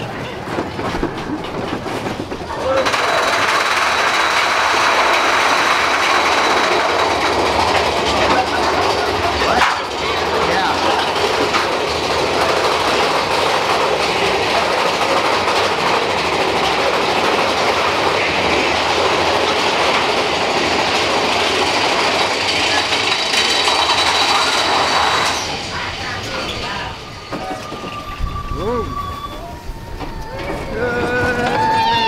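Mine-train roller coaster cars running along the track, heard from on board: a loud, steady rush and rattle of wheels that starts about three seconds in and eases off near the end, with a faint steady high whine over it.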